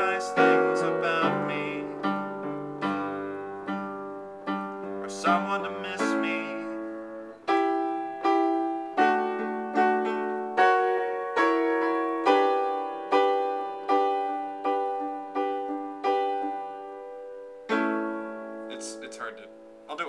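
Piano played in chords, with a man's voice singing along over the first few seconds. From about seven seconds in, a chord is struck over and over, a little faster than once a second, ending with one last chord left to fade.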